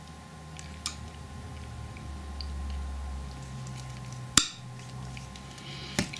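A single sharp snip as hand snips cut through a thin copper-coated 0.8 mm TIG rod, with a couple of faint clicks earlier and a low steady hum underneath.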